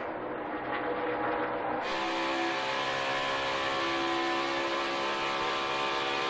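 NASCAR Cup race cars' V8 engines running flat out at a steady pitch. About two seconds in the sound becomes a closer, fuller, steady drone of a single Toyota's V8, as heard through an onboard camera microphone.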